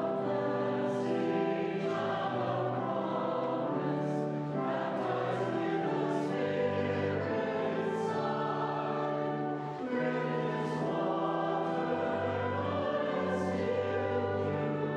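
Church choir singing a slow hymn, notes held and chords changing about every second, over a steady low accompaniment.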